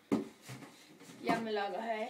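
A woman speaking briefly in the second half, after a short sharp tap at the start, in keeping with her hands on the cardboard box.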